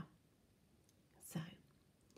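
Near silence, broken about one and a half seconds in by one short, breathy vocal sound from a person, like a quick breath or a whisper.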